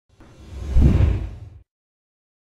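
Logo-sting sound effect: a whoosh with a deep bass boom that swells to a peak just under a second in, then fades away.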